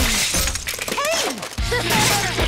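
Cartoon smashing and shattering sound effects as one of the H Town buildings is wrecked, with a deeper rumble joining about one and a half seconds in.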